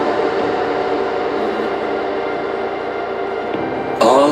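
Melodic techno in a breakdown: a steady sustained synth drone of several held tones, without the vocal heard around it.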